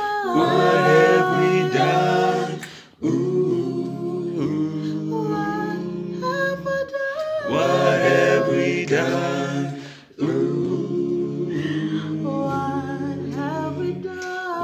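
A small mixed group of voices singing a South African song a cappella in harmony, phrase by phrase, with short breaks for breath about three and ten seconds in.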